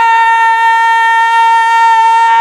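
A man's singing voice holding one long, high note at a steady pitch, the sustained end of a phrase in an unaccompanied naat recitation.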